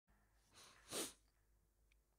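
A person's short, sharp burst of breath close to the microphone about a second in, with a fainter breath just before it.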